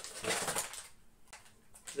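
Paper mailer envelope rustling as it is opened and the packaged cable is pulled out, mostly in the first second, then quieter with a few light clicks near the end.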